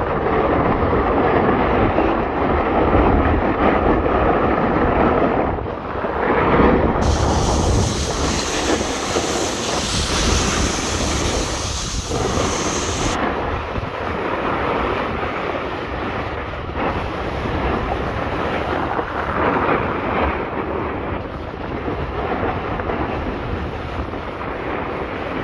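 Wind rushing over the microphone and skis scraping across packed snow while skiing downhill: a steady, loud rush of noise. For several seconds in the middle it turns brighter and hissier.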